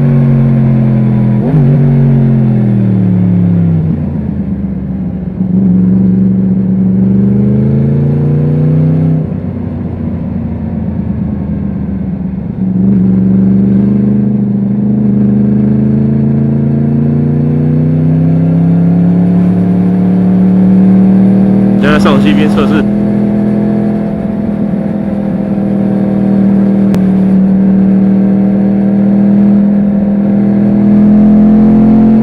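Yamaha MT-10's crossplane inline-four engine under way. Its note falls as the bike slows, then rises through the revs with two upshifts, about 9 and 12 seconds in, before climbing again and holding steady. A brief rush of noise comes about 22 seconds in.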